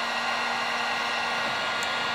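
Electric heat gun running steadily, a rush of blown air with a steady whine, heating a radiator fan thermostatic switch under a continuity test. No meter beep sounds: the switch is not closing at temperature, which the owner takes as a sign the switch is bad.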